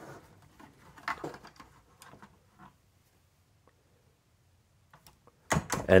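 A few faint clicks and light rattles of plastic LEGO bricks as a large brick-built model is handled and turned, scattered over the first two or three seconds.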